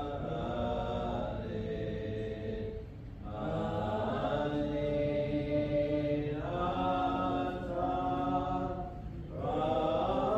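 Several voices singing a slow hymn without accompaniment, each note held long, with short breaths between phrases about three seconds in and again near the end.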